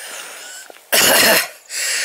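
A woman coughs about a second in, while struggling up a steep uphill track.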